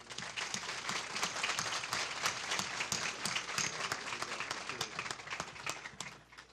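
Audience applauding: many people clapping at once, starting abruptly and dying away near the end.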